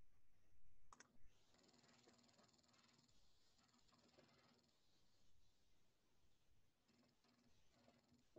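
Near silence: faint room tone, with a single sharp mouse click about a second in, as the data recording is started in the software.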